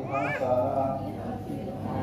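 A man chanting an Arabic supplication prayer (doa) in a drawn-out recitation tone, with a brief high rising-and-falling cry just after the start.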